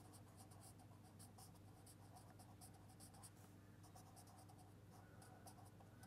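Faint scratching of a felt-tip pen writing on paper, a quick run of short strokes.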